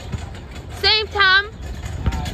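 Two short, high-pitched vocal calls from a person, one right after the other about a second in, over a steady low background rumble.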